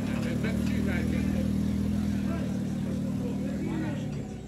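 A car driving slowly past, its engine a steady low hum that drops away near the end, with voices in the background.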